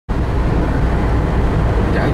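Steady low rumble and hiss of a vehicle travelling at highway speed: road and wind noise, strongest in the deep bass.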